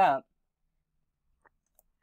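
The narrator's voice ends a word in the first moment, then near silence with two faint clicks late on.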